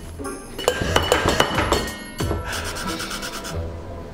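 Nutmeg being grated over a drink with a small handheld metal grater: a dry rasping scrape in the second half, after a few sharp clicks and knocks of bar tools about a second in. Background music plays throughout.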